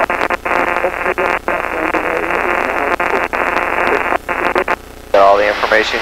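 Weak, garbled automated weather (AWOS) broadcast heard over the aircraft radio in the headsets: a tinny, narrow voice that keeps dropping out for split seconds because the station is behind a hill. It cuts off a little before the end, when a voice comes on the intercom.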